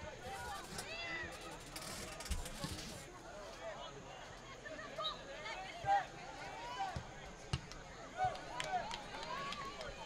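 Scattered shouts and calls from players and spectators around an outdoor soccer match, with a few short sharp knocks in the second half.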